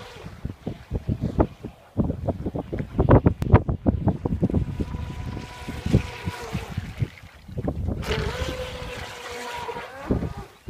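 Radio-controlled model speedboat's motor whining steadily as it runs across the water, with irregular gusts of wind buffeting the microphone, heaviest in the middle.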